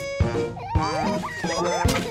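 Instrumental backing of a children's song, with a beat and several short, quick rising sliding notes in the middle. There is a sharp hit near the end.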